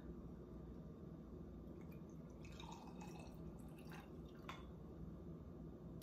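Tequila poured from a glass bottle into a small drinking glass: a few faint trickles and drips in the middle.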